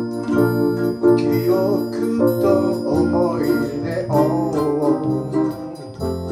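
A small acoustic band playing live: strummed ukulele, bass ukulele and keyboard chords, with a wavering melody line above them from about a second in.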